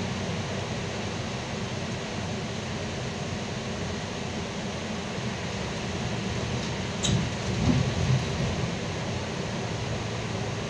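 Interior noise of a Solaris Urbino 18 III articulated bus driving on a snow-covered road: a steady rumble of engine and tyres. About seven seconds in there is a sharp knock, then a few low thumps over the next second or so.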